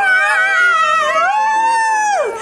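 A single long, high-pitched squeal from a person's voice, held on one note, rising in pitch partway through and then sliding down as it ends.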